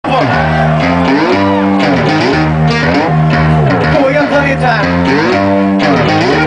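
Loud live electronic music played through a PA: a repeating phrase of stacked synthesizer tones that slide down and back up in pitch about once a second, over a steady low bass.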